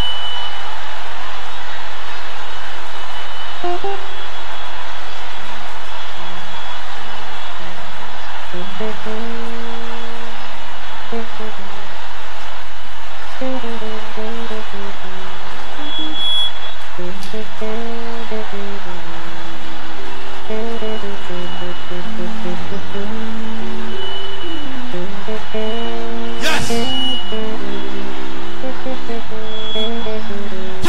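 A congregation singing a praise song in a loud, noisy recording, the melody coming through more clearly from about nine seconds in. A sharp knock sounds about twenty-six seconds in.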